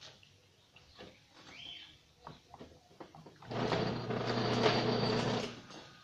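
Homemade drill built from a small washing-machine motor with a welded-on drill chuck, switched on and running for about two seconds with a steady hum, then cut off. Light handling knocks and clicks come before it.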